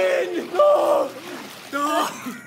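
Young men yelling and cheering in three loud, drawn-out shouts.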